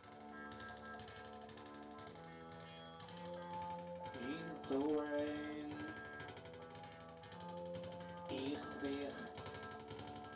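A small rock band playing live, with keyboard, bass and electric guitar. Steady held chords start suddenly at the outset, and a voice sings in gliding phrases from about four seconds in and again near the end.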